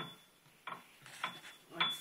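A quiet lull with a few faint light clicks, and a voice begins near the end.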